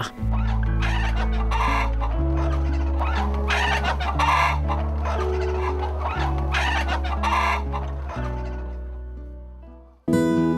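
Free-range hens clucking, about five short calls, over background music with long low held notes; both fade out near the end.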